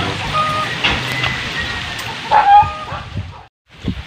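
Outdoor background noise with a few short pitched sounds and one loud, short call about two and a half seconds in. The sound then drops out to silence for a moment near the end.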